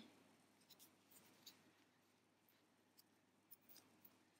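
Near silence with a few faint, short scratchy ticks and rustles: a crochet hook drawing yarn through single crochet stitches.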